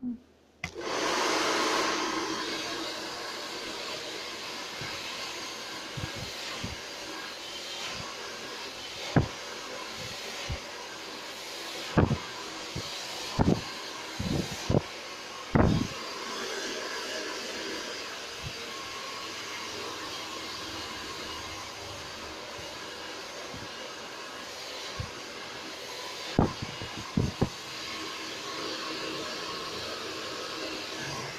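Handheld hair dryer switched on just under a second in and running steadily while short hair is blow-dried. A handful of short, sharp knocks stand out over it, several in the middle and a quick cluster near the end.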